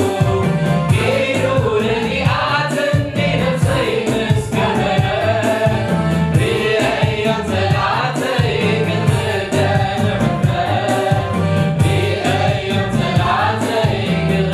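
Tigrinya gospel worship song sung by a male lead singer with a small mixed choir, all on microphones, over an accompaniment with a bass line and a steady beat.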